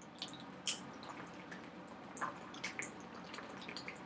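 Water being drunk from a plastic bottle: irregular small wet clicks and gulps of swallowing, the loudest just under a second in.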